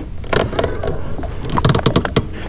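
Light clicks and knocks of fishing rod, line and tackle being handled in a small boat, over a low steady hum, with a cluster of clicks near the end.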